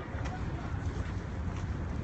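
Wind buffeting a handheld phone's microphone outdoors: a steady low rumble.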